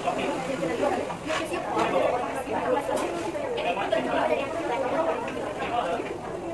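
Indistinct chatter of many people talking at once, a steady background babble of voices with no single speaker standing out.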